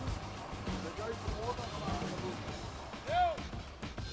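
A quiet stretch of faint, distant voices over low background music, with one short louder voiced call about three seconds in.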